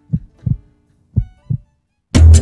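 Heartbeat sound effect: two lub-dub double thumps about a second apart, with faint lingering music tones beneath.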